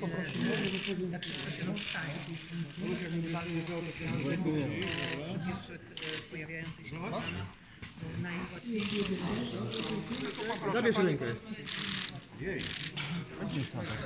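Overlapping background chatter of several people talking, with sharp clicks of camera shutters now and then.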